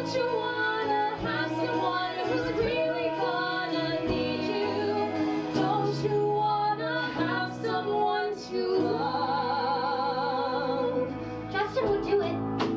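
Women singing a musical-theatre song with vibrato, backed by a small band of piano, drums, bass, guitar, violin and cello. A long note is held from about three quarters of the way in, and the music drops back briefly near the end.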